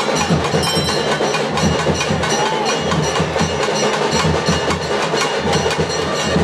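Temple music during an arati: continuous, dense drumming with metal bells ringing over it.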